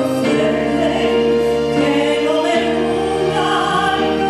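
A woman singing solo into a microphone with musical accompaniment, holding long notes that step from pitch to pitch.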